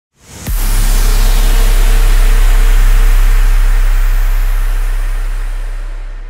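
Cinematic logo-intro sting: a short swell into a sudden heavy, deep boom about half a second in, which rings on as a low rumble with a hiss over it and slowly fades away.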